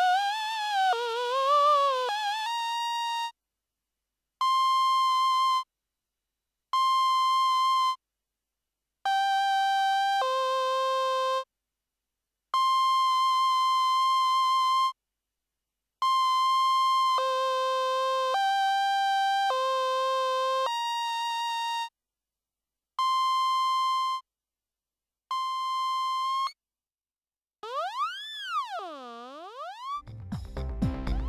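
xoxos Syng2 LE vocal software synthesizer playing single notes with a bright, buzzy tone. It opens with a note wavering up and down, then plays a string of held notes about a second long with short silences between them, some sliding straight into a lower note. Near the end one tone sweeps steeply down and back up.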